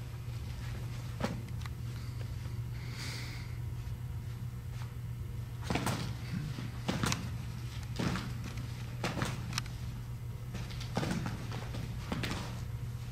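Tennis balls thrown in quick succession knocking off a catcher's gear and bouncing on artificial turf during a blocking drill: scattered sharp knocks, a couple early and then more closely spaced through the second half.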